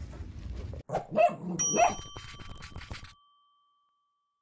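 Outro sound effect: a couple of dog barks, then a bright chime ding that rings on and fades away.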